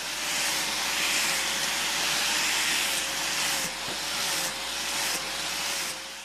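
A handheld grinder running against steel tubing: a steady hissing grind with the motor's faint hum beneath, dipping briefly a few times as the pressure on the metal eases.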